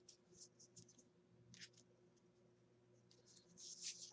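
Faint brushing and sliding of tarot cards being handled and laid down: a few short scratchy strokes over near silence, busier near the end.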